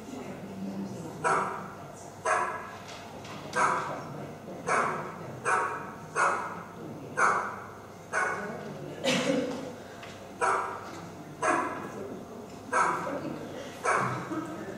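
Recorded dog barking played over loudspeakers into a hall: about a dozen single barks, roughly one a second, each followed by a short echo.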